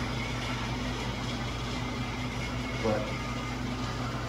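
A steady low machine hum, unchanging throughout, with a single spoken word near the end.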